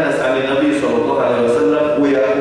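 A man speaking continuously.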